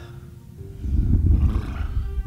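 Animated-film soundtrack: a low rumble with music that starts about half a second in and swells to its loudest near the end.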